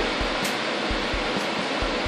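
Steady rushing air noise, like a fan or blower running, with a few short, soft low thumps scattered through it.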